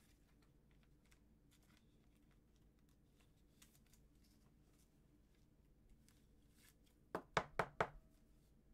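Faint light taps and rustles of gloved hands handling a trading card, then four quick, sharp knocks close together near the end.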